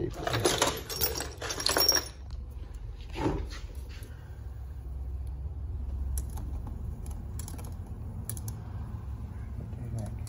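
Metal transmission parts clinking and rattling for about two seconds as they are handled, then a single click and scattered faint metallic ticks as a tool works inside the transmission case, over a steady low hum.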